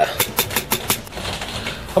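A quick run of light clicks, about seven in the first second, from a fingertip handling the exposed Amiga A500 keyboard circuit board near its controller chip. A faint hiss follows.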